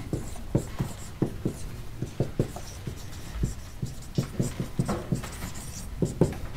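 Dry-erase marker writing on a whiteboard: a run of short, irregular taps and strokes as letters and a formula are written.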